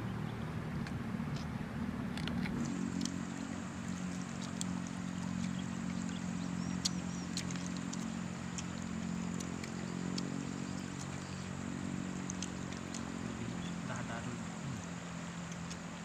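An engine running steadily at one speed throughout, with a few small clicks and rustles of hands and a fork on banana leaves.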